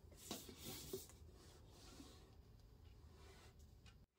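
Near silence: faint rubbing of a cloth rag against the edge of a glass plate, mostly in the first second, over low room hum.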